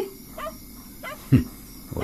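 A single short falling animal cry, like a yelp, about a second and a half in, over a quiet background.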